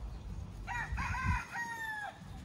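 A rooster crowing once: a few short arched notes starting under a second in, then a long held note that dips slightly as it ends.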